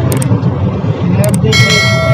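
Mahindra Bolero's diesel engine and road noise droning steadily inside the cabin at highway speed. Over it come two short clicks and then, about one and a half seconds in, a ringing bell chime from a subscribe-button sound effect.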